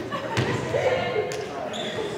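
A volleyball being struck twice, about half a second in and again a second later, each hit echoing in a large gym, over players' voices.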